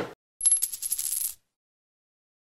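Coin sound effect: a metal coin spinning down and settling, heard as a fast run of small clicks with a thin high ring, lasting about a second. It comes just after a brief swish at the start.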